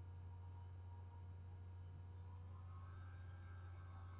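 Near silence: a steady low hum with a few faint thin tones above it, which shift upward in pitch about two and a half seconds in.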